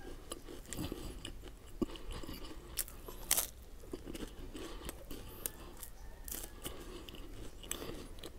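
Crisp rolled wafer sticks (Superstix) being bitten and chewed close to the microphone: steady crunching and chewing, with a few sharper crunches, the loudest about three seconds in.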